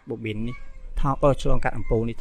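Speech only: a man's voice lecturing in Khmer, with no other sound standing out.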